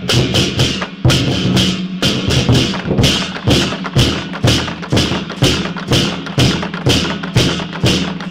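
Large Chinese barrel drum with a tacked hide head, beaten with wooden sticks by two players in a steady processional beat of about two to three strokes a second, with a bright ringing carried on each beat.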